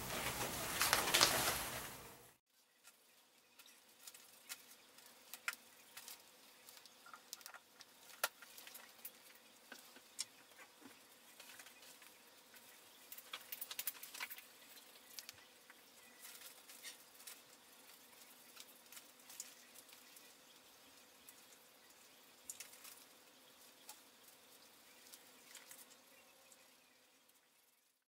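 Faint dabbing and rubbing of a dye applicator on leather, with soft rustling of newspaper and small scattered clicks. A louder stretch of rustling handling noise comes in the first two seconds.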